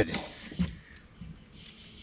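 A few faint, scattered clicks and small handling noises from a landed largemouth bass being held and unhooked.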